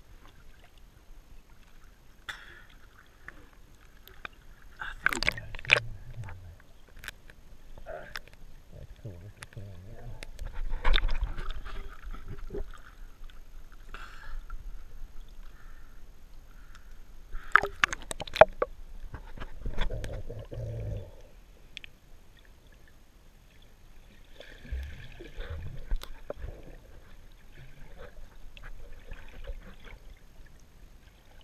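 Water sloshing and gurgling around a waterproof camera held at the surface, with several louder splashes as it is moved in and out of the water.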